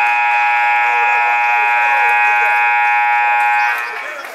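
Gym scoreboard buzzer sounding one long steady blast, cutting off near the end, with faint voices underneath.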